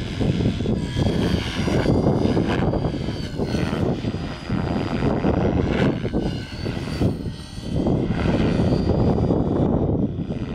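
A 550-size radio-controlled helicopter in aerobatic flight: rotor blade noise with a thin motor and gear whine. It swells and fades several times as the helicopter manoeuvres, with brief dips a little under halfway through and again a few seconds later.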